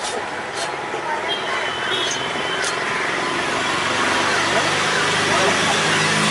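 Busy fish-market ambience: many voices talking at once over traffic noise, with a few sharp clicks in the first three seconds and a low engine hum coming in about halfway and growing a little louder.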